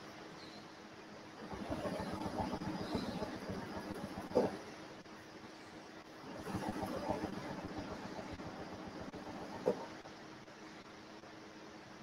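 Domestic sewing machine stitching ruler-work quilting in two runs of a few seconds each, with a pause between. Each run ends in a sharp click.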